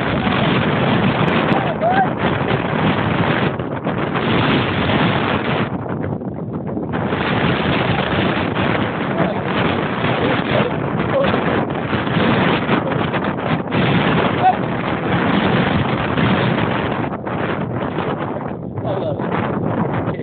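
Wind buffeting a phone's microphone: a loud, continuous rushing that drops briefly about six seconds in and turns patchier from about seventeen seconds on.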